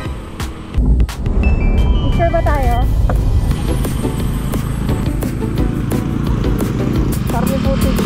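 Honda TMX125 single-cylinder motorcycle running on the road, its engine and wind noise making a loud steady low rumble. Background music cuts out just under a second in.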